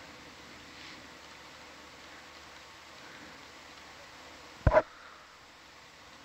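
Steady faint hiss with one sudden, loud double click about four and a half seconds in.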